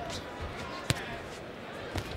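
Ringside sound of a boxing bout: a steady arena murmur with one sharp smack about a second in, and a softer knock near the end.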